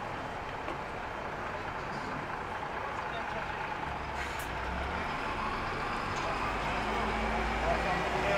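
Busy street ambience with passers-by's voices. About halfway in, a heavy vehicle's low engine rumble comes in and grows louder.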